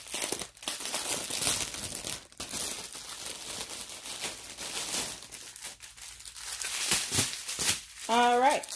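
Plastic packaging crinkling as a bag of diamond painting drills is opened and the small plastic drill bags inside are handled, in irregular crackles throughout.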